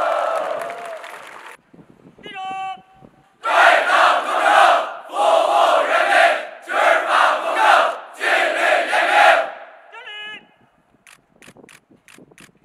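A large crowd shouting four short phrases together, each about a second long, after a single voice leads off. A lone voice follows, then a few sharp claps near the end.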